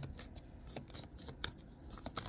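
A deck of tarot cards being shuffled by hand: faint, irregular soft clicks and swishes as the cards slide and tap against each other.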